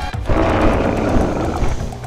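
Background music with a low, steady beat. Over most of it runs a rushing noise effect, which fades near the end.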